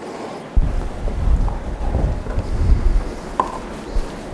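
Handling noise on a microphone: an uneven low rumble with bumps and rustles starting about half a second in, and a sharp knock near the end.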